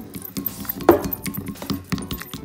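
Wooden stick clinking and scraping against a glass bowl while stirring thickening glue-and-starch slime, in irregular taps, with one louder clink just under a second in.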